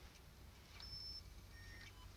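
Faint mechanism sound of a Blaupunkt San Remo CD32 car CD player reading a just-inserted disc: a short high whine about a second in and a lower one near the end, as the disc spins up and is read.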